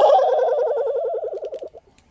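A man's loud, drawn-out yell that wavers rapidly and drops slightly in pitch, cutting off about 1.7 seconds in.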